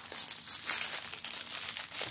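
Clear plastic packaging of diamond-painting drills crinkling as it is handled, with many quick, irregular crackles.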